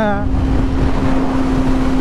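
2005 Yamaha YZF-R6's 600cc inline-four engine cruising at a steady freeway speed of about 70 mph, holding one steady note, with wind and road rumble.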